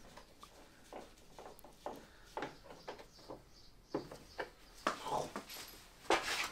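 Faint, irregular clicks and taps of hand work on a plastic car bumper, with self-tapping Torx screws being fitted along its edges.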